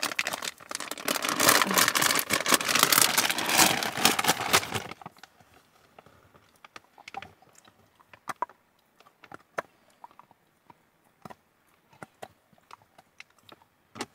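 A plastic treat pouch crinkling and rustling loudly for about five seconds as it is worked open by hand. Then scattered small clicks and crunches as a dog takes and chews a Greenies dental chew.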